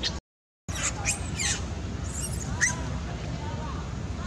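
A young macaque giving several short, high-pitched squeaks and squeals that sweep steeply in pitch, over a steady low background rumble. The sound drops out completely for about half a second just after the start.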